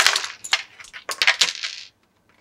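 Small plastic 1/6-scale action-figure accessories tipped out onto a tabletop, clattering in several quick bursts of clicks, the loudest at the start, then stopping suddenly near the end.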